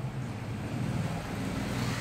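Steady low background hum with an even noisy hiss and no distinct events.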